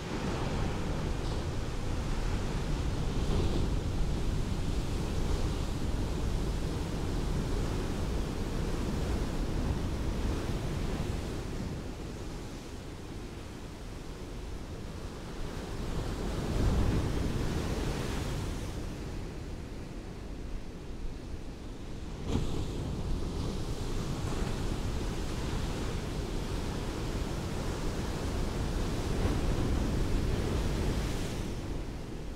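Ocean surf washing onto a beach: a continuous rushing noise that swells and ebbs. It surges about 17 seconds in and again abruptly about 22 seconds in.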